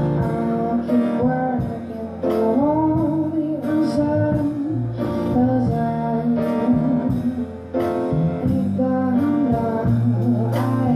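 Live music: a woman singing a slow song while accompanying herself on a grand piano, the notes struck in a steady pulse.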